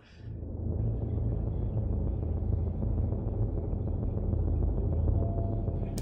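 A low, steady rumbling drone from a horror film's soundtrack, fading in over the first second and then holding at an even level.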